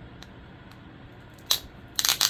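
A sticker being picked at and peeled from its backing sheet: faint fingertip ticks, then one sharp crackle about one and a half seconds in.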